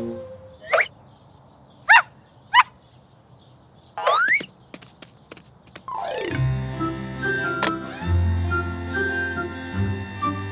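Four short upward-gliding cartoon sound effects, the last a longer rising sweep about four seconds in, then background music from about six seconds in.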